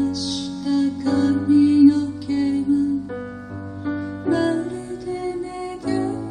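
Grand piano playing slow, sustained chords in a ballad, the chords changing every second or so.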